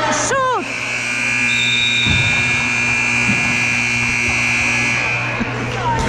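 Gym scoreboard buzzer sounding one long steady tone for about four seconds, starting about half a second in, over the crowd's background noise.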